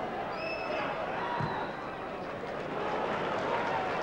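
Steady murmur of a large football stadium crowd heard through a TV broadcast during open play, with a brief high whistle about half a second in.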